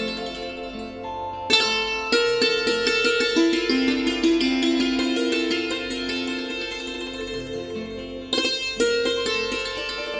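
Instrumental introduction of a Hindi devotional bhajan: a plucked string instrument melody over held notes, with sharp string strikes about one and a half seconds in and again near the end.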